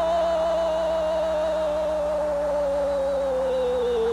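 Brazilian football commentator's long drawn-out shout of "gol" for a goal just scored, held on one note that slowly sinks in pitch.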